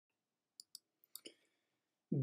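Near silence broken by four faint clicks in two pairs, about half a second and a second in.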